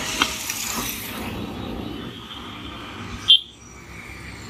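A click from the ignition key being turned in a Hero Honda scooter's key switch, over steady outdoor noise, then a short sharp sound a little over three seconds in.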